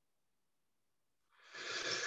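Silence, then about one and a half seconds in, a short audible in-breath picked up by a video-call microphone.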